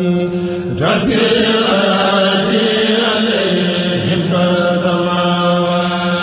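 Devotional chanting in Arabic, sung in long held notes over a steady sustained tone, with a sliding rise in pitch about a second in.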